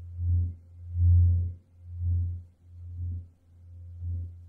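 Meditation background music: a deep, steady drone that swells about once a second, with a faint thin tone held above it.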